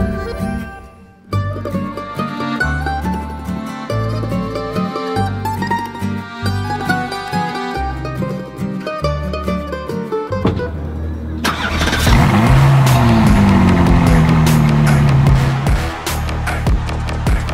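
Background music with a melody over a pulsing beat for about ten seconds, then a loud car engine rushes in near the end, its pitch falling over about three seconds.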